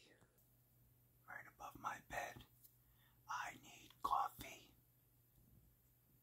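A man whispering: two short whispered phrases, about a second in and about three seconds in, over a faint steady hum.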